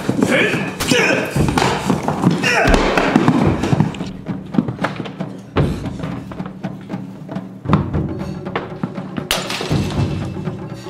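Fight-scene punch and body-impact sounds: about seven heavy thuds, bunched in the first three seconds and more spaced out after, with grunts and a music score underneath.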